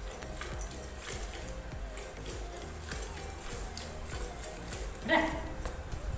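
Hand-milking a cow into a steel bucket: milk jets squirt into the pail again and again in short hissing streaks. About five seconds in there is a brief call that rises in pitch.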